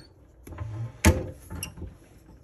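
Metal parts being handled on a mini lathe's pen mandrel setup: one sharp clack about halfway through, then a few lighter clicks, as the brass tube and bushings are fitted and the tailstock is brought up.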